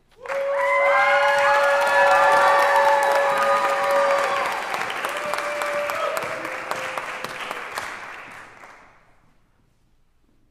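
Audience applauding and cheering, starting suddenly and loudest for the first few seconds. It dies away about nine seconds in, as the next singer takes the stage.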